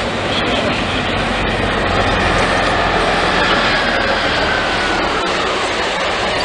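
City transit bus running through a street intersection in busy traffic, a steady engine hum under the street noise, with a faint high whine slowly falling in pitch midway through.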